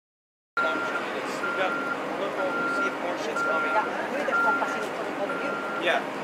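A vehicle's reversing alarm beeping steadily, about once a second, each beep half a second long, over people talking. It starts about half a second in, after a brief silence.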